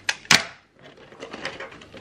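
Hands rummaging through a pouch and paper bag, small objects clicking as they are handled and set down: two sharp clicks in the first half second, then light rustling and small ticks.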